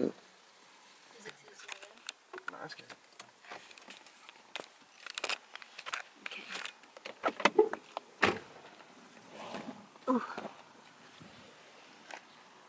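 Irregular clicks, knocks and rustles of a handheld phone camera being moved about, with faint murmured voices in between; the strongest knock comes about eight seconds in.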